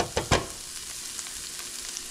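Sliced onions and mushrooms sizzling in a nonstick frying pan as their moisture cooks off. There are a few quick strokes of a silicone spatula against the pan in the first half second, then a steady sizzle.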